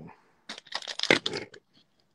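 A burst of crackling and rustling handling noise close to the phone's microphone, starting about half a second in and lasting about a second.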